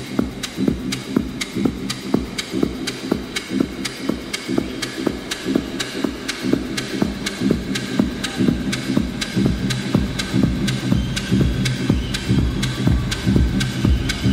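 Minimal techno from a DJ set: a steady, throbbing beat with evenly repeating ticks over a deep bass, the lowest bass swelling near the end.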